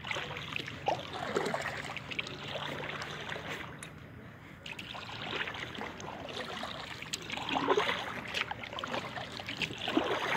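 Kayak paddle strokes in calm river water: the blades dip and pull in irregular swells, with water trickling and dripping from them between strokes.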